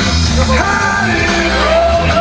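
Hard rock song with a yelled, sung lead vocal over a full band.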